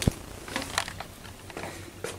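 A sharp knock right at the start, then a few lighter clicks and taps scattered through, over a faint low hum.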